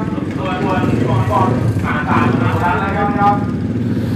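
Race-prepared Yamaha X-Max 300 scooters' single-cylinder engines running steadily at a low, even pitch at the drag-strip start line after being started.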